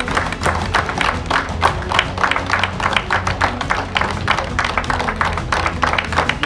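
An audience applauding, a dense irregular patter of hand claps, with background music underneath.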